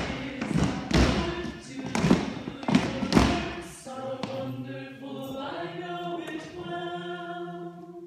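A small group singing a cappella in a reverberant hall. A series of heavy thumps sounds for the first three seconds or so, then from about four seconds in the voices hold steady sung chords.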